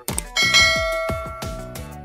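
Subscribe-animation sound effect: a quick double mouse click, then a bell ding about half a second in that rings out with a long fade, over background music with a steady thumping beat.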